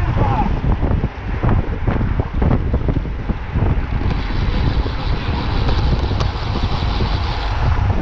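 Wind buffeting the microphone of a camera on a road bike riding at speed in a group, a constant low rumble with gusts, with brief snatches of riders' voices.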